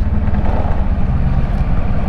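Kawasaki Versys 650's parallel-twin engine running steadily at low town speed, with wind and road noise on the bike-mounted microphone.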